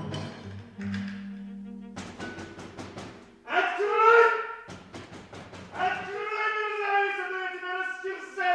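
Radio-play sound effects: a quick run of knocks and thuds, pounding on a locked wooden door, followed about halfway through by a loud man's shout, then held musical notes near the end.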